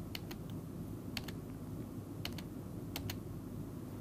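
Computer input clicks in quick pairs, about four times, as slides are advanced, over a faint low steady hum.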